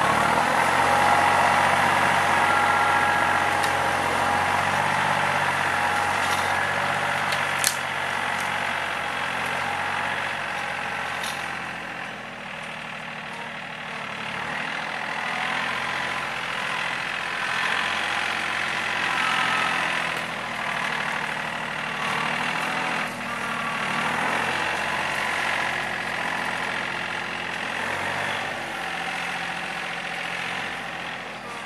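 Diesel engine of a TYM T413 sub-compact tractor running steadily as the tractor drives across the paddock, dragging its grapple tines through the grass. The engine is louder in the first dozen seconds and dips as the tractor moves off. A single sharp click comes about eight seconds in.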